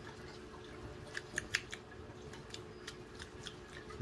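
A handful of faint, quick small clicks about a second and a half in, over a steady low hum.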